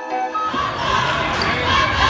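A flute tune ends about half a second in and gives way to the noise of a basketball game in a gym: crowd chatter with the ball bouncing on the hardwood court.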